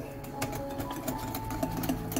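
Wire hand whisk beating thick cake batter in a glass bowl: a steady run of rapid clicks of the wires against the glass, with the wet swish of the batter.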